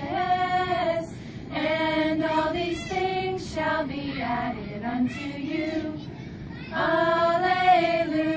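A group of young women singing together, mostly in long held notes, with a short break about a second in, a quieter stretch past the middle, and a loud held note near the end.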